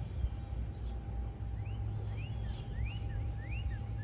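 Outdoor background: a steady low rumble, with a bird giving a quick series of short rising chirps, about two a second, through the second half.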